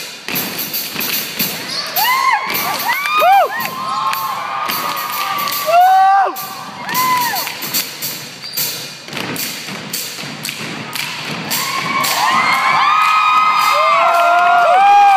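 Rhythmic thumps from a stage dance routine, with an audience cheering over them in high rising-and-falling shouts and screams that grow into a sustained cheer near the end.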